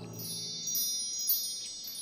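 A shimmering, high, wind-chime-like sparkle sound effect of many thin ringing tones, ringing for nearly two seconds and thinning out toward the end.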